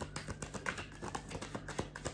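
A deck of cards being shuffled by hand: a quick, irregular run of light clicks and taps as the cards slide and knock together.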